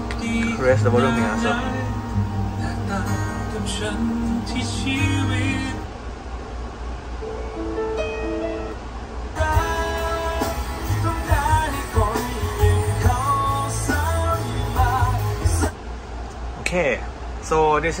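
Music with singing played from the van's touchscreen over its cabin sound system, changing to a different track about six seconds in and dropping away about sixteen seconds in.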